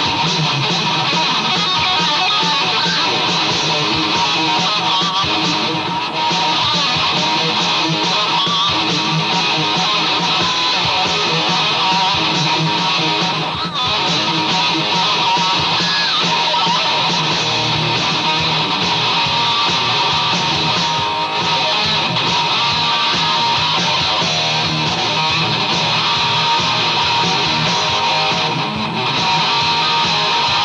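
Solo electric guitar played through an amplifier: a loud, continuous instrumental tune with no backing band, with brief dips about every seven seconds.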